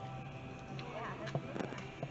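Indistinct voices of people talking some way off, over a steady low hum.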